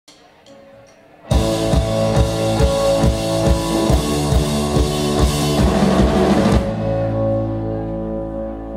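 Live rock band of drum kit, electric guitar, bass and keyboard coming in together about a second in, after three faint ticks, with the kick drum hitting about twice a second. Near the end the drums drop out, leaving a held chord ringing.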